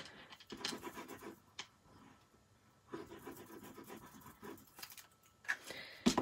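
Faint rustling and scraping of cardstock and paper pieces being handled and slid across a wooden desk, in two short stretches with a light click between them.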